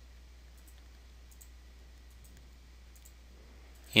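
Faint, scattered clicks of a stylus on a pen tablet as a line is drawn, over a low steady hum.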